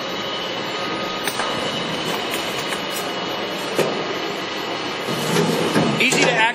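Steady machinery running noise, an even whir with a few faint steady whines. There is a single knock about four seconds in, and near the end a rattle and scrape of a lathe's sheet-metal chip pan being slid out.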